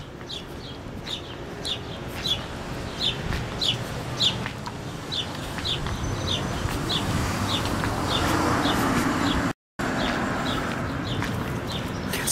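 A small bird chirping over and over, short high chirps about two a second with uneven gaps. Under it runs street traffic noise that swells as a vehicle passes about eight seconds in.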